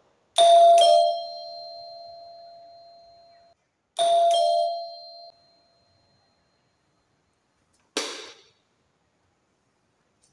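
Electric two-tone doorbell chime sounding ding-dong twice as its bell push is pressed, testing a newly wired bell circuit. The first chime rings out and fades over about three seconds; the second, about four seconds in, is cut short. A single short sharp click comes near the end.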